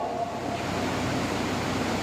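Steady, even rush of air from an electric fan and air cooler running.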